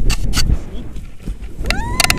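Wind buffeting the camera microphone as a tandem paraglider takes off, with a few knocks in the first half second. Near the end a high, clean tone rises and then holds.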